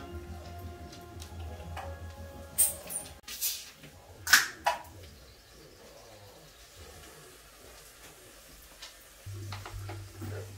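A man chugging beer from a can: a handful of loud gulps less than a second apart in the first half, over faint music and a low steady hum.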